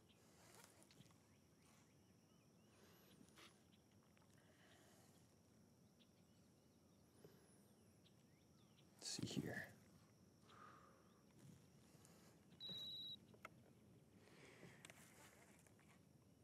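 Near silence: faint outdoor quiet, broken by a brief rustle about nine seconds in and a short high-pitched beep a few seconds later.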